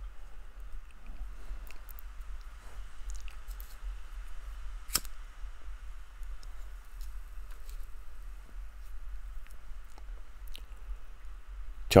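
Swiss needle file scraping on the ring edge of an unhardened O1 tool-steel gouge blank, a faint, steady scratching with small clicks and one sharper click about five seconds in. The steel is still annealed, so the file cuts.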